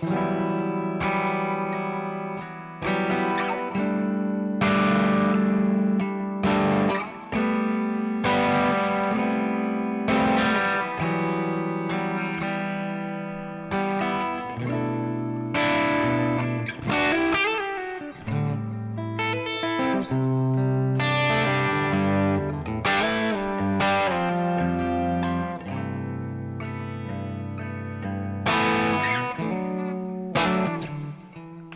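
Electric guitar on a Stratocaster-style guitar playing a chord progression: chords struck one after another, each left ringing, with melodic fills between them. Another voicing of E minor is being tried out within the progression.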